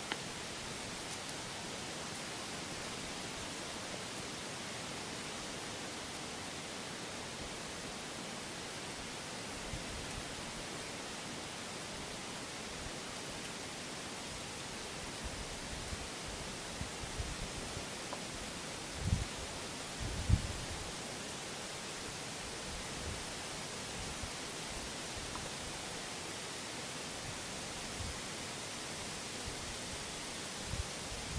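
Steady, even hiss of a quiet woods as picked up by a camcorder microphone, with a couple of dull low thumps about two-thirds of the way in.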